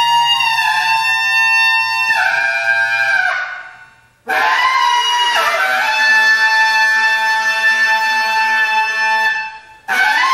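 Bass clarinet playing long held notes in free improvisation, loud and rich in overtones, with small steps in pitch. One note fades out at about four seconds, a new one starts abruptly just after, and it is held until it fades just before the end.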